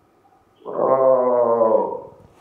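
A man's drawn-out hesitation sound, 'uhh', held on one pitch for just over a second, heard over a telephone line.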